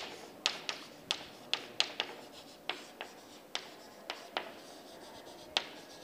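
Chalk writing on a chalkboard: a string of sharp, irregular taps with faint scratching between them, about two or three a second, as a word is chalked onto the board.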